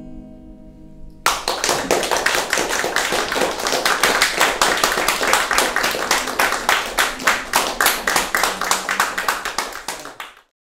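Acoustic guitar's final chord ringing out, then a group of people applauding from about a second in, with separate claps audible.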